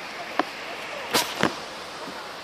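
Steady hiss of heavy wet snow falling, with three sharp clicks about half a second, a second and a second and a half in.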